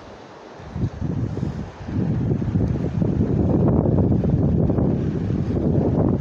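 Wind buffeting the phone's microphone: an uneven low rumble that builds about a second in, is loudest through the middle, and eases near the end.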